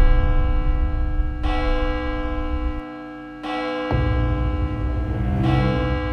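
A large clock-tower bell tolling, struck three times about two seconds apart, each stroke ringing on into the next, over a low background rumble.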